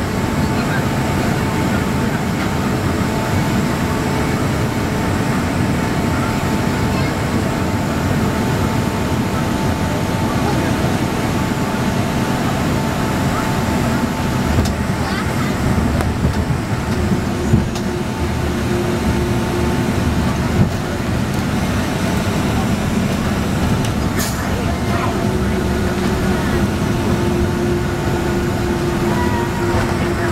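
Cabin noise of a Boeing 767-200ER heard from a seat over the wing during landing and rollout: a loud, steady rumble of engines and airflow carrying a thin whine. About halfway through a lower hum comes in, the whine fades soon after, and a few sharp knocks sound as the jet slows on the runway.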